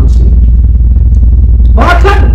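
A loud, steady, deep rumble with no clear pitch. A woman's voice breaks in near the end.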